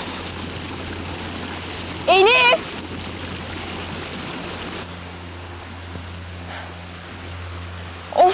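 Shallow stream running over rocks, a steady rush that fades about five seconds in. A short, loud pitched call, rising then falling, sounds once about two seconds in.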